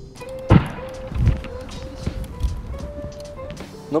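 A brick striking a cracked bicycle helmet on the ground: one sharp hit about half a second in, the tenth blow of the test, followed by a few softer thuds, over background music.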